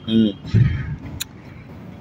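Low rumble of road traffic, with a single sharp click about a second in.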